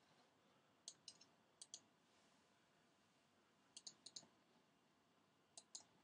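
Faint computer mouse button clicks, mostly in quick pairs (double-clicks), about five of them spread over the few seconds, as when double-clicking an icon to open a program.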